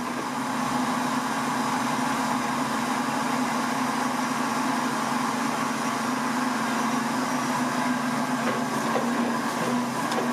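Printing press for kite paper running with a steady mechanical hum, unchanged throughout.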